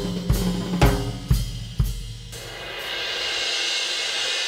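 Drum kit played: deep, ringing drum strokes about twice a second for the first two seconds, then a cymbal roll that swells steadily louder toward the end.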